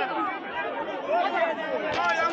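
Crowd chatter: many voices talking and calling out over each other.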